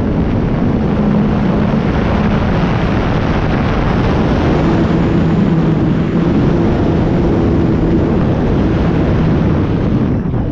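Onboard sound of an E-flite Night Timber X RC plane in flight: steady rush of airflow over the camera microphone with the electric motor and propeller droning underneath, the drone's tone shifting about halfway through.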